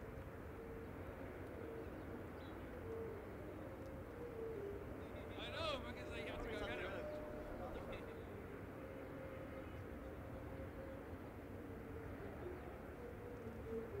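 Faint background ambience: a low steady hum with distant, indistinct voices, a little louder about six seconds in.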